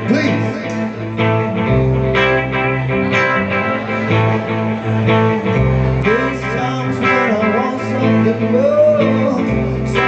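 Live band playing a song: electric guitars, bass and drums with a steady beat, and a singer's voice in places over it.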